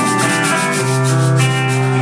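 Harmonica played with cupped hands into a vocal microphone, holding long notes over a live band's bass and guitar.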